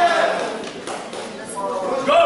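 Raised voices carrying in a large hall, loudest at the start, easing off in the middle and rising again near the end.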